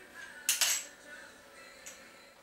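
Quick-release (Touch & Go) camera plate of a TERIS TS50 fluid head being unlocked and pulled free: two sharp metal clicks in quick succession about half a second in, then a lighter click near the end.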